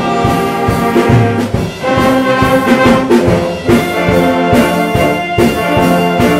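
A school band of flutes, brass and violins playing a Christmas song, with the brass loudest.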